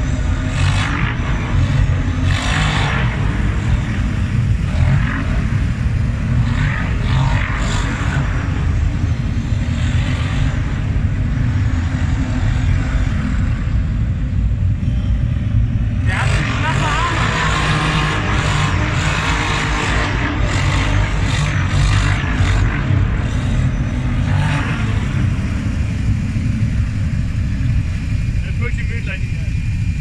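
Kawasaki KFX 700 V-Force quad's V-twin engine running under throttle as it rides across sand, its deep rumble filling the inside of a concrete cooling tower.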